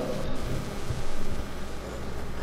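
Microphone handling noise: a low rumble with a few dull thumps over the noise of a large room.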